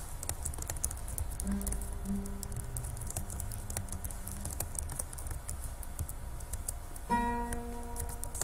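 Acoustic guitar played softly: a few quiet low notes in the first half, then a louder ringing chord about seven seconds in. A patter of faint clicks runs underneath.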